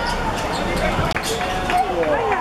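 Ball being kicked and bouncing on a hard outdoor court, a few sharp thuds, with players and onlookers calling out.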